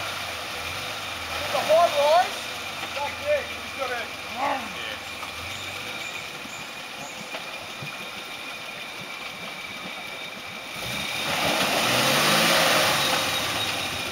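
Nissan Patrol 4WD engine running at low revs while stuck in a deep mud bog, then revving up for about three seconds near the end with a rising note and a rush of noise as it tries to drive out.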